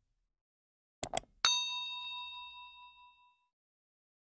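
Two quick clicks, then a single struck bell-like ding that rings on several pitches and fades out over about two seconds.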